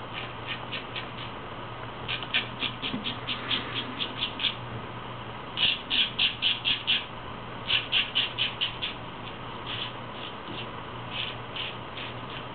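A full-hollow straight razor, forged from 5160 leaf-spring steel, rasping through lathered beard stubble in quick short strokes. The rasps come about four a second, in runs with short pauses between them, over a faint steady hum.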